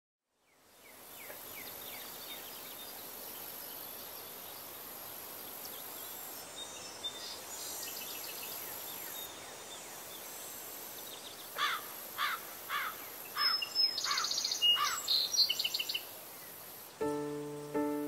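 Outdoor meadow ambience with a steady hiss and songbirds: a few faint falling notes in the first seconds, then a loud run of about six quick downward-sliding whistled notes and a high trill past the middle. Piano notes come in about a second before the end.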